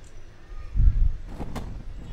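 Muffled low thumps picked up by a close stage microphone, with a couple of short clicks about a second and a half in.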